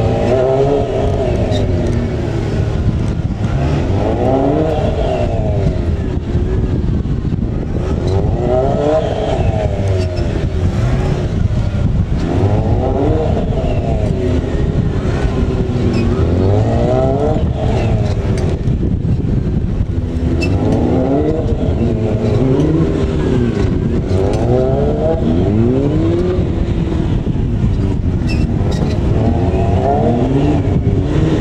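Sport motorcycle engine revving up and dropping back over and over, about every four seconds, as the bike is worked through tight cone turns on a gymkhana course, over a steady low rumble.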